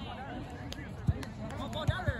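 Two sharp thuds of a volleyball being struck, about a second in and again near the end, over the chatter of players and onlookers.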